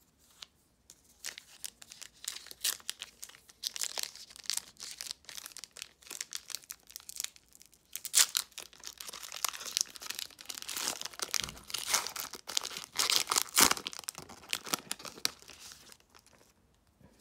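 A foil trading-card pack wrapper crinkling in the hands and being torn open, a run of sharp crackling rips that grows louder about halfway through, the loudest rips near the end.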